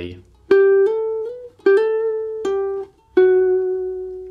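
Guitar playing a short single-note phrase on the G string, stepping up and back down through frets 12, 14, 16, 14 and 12. Four notes are picked and the others are slurred. The last note is left to ring and fade.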